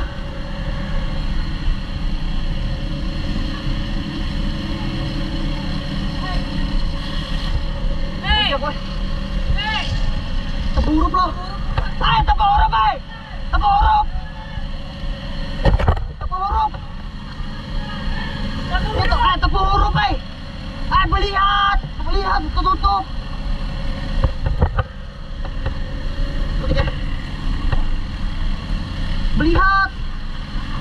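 A motor running steadily, a low drone with a steady hum over it, while people shout back and forth in bursts from about eight seconds in until about twenty-three seconds.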